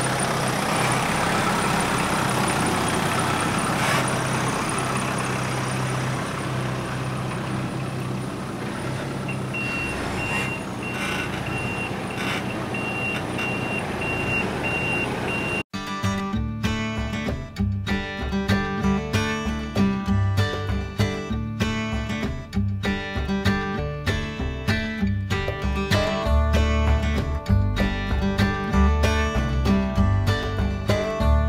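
Kubota diesel tractor engine running steadily as the tractor drives. A rapid, high beeping joins in for several seconds. About halfway through, the sound cuts suddenly to acoustic guitar music.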